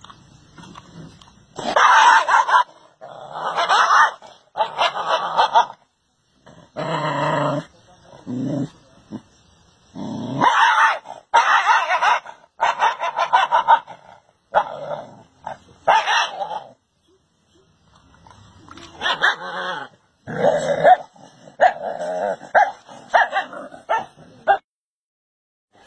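A dog barking and yipping, a long string of short calls in runs, with a couple of brief pauses.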